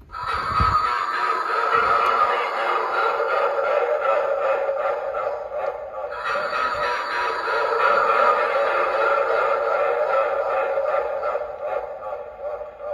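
Halloween talking-rock prop, triggered by its try-me button, playing a spooky music-and-voice clip through its small built-in speaker: thin, with no bass. The clip runs in two parts with a brief break about six seconds in, and a low thump sounds as it starts.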